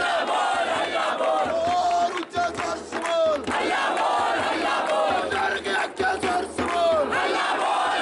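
A crowd of people shouting and chanting, many voices overlapping at once.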